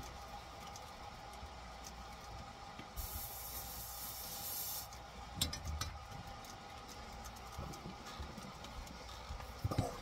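Flux and solder sizzling under a hot soldering iron held on a wire joint: a soft hiss starting about three seconds in and lasting nearly two seconds, followed by a few light clicks, over a faint low hum.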